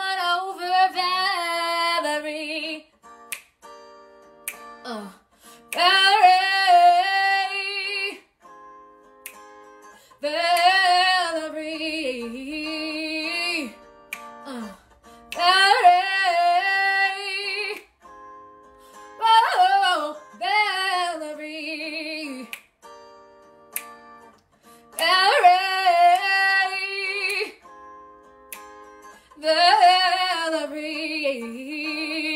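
A woman singing a song live, in sung phrases of a few seconds with short breaths between them, over a quieter instrumental backing whose steady notes carry through the pauses.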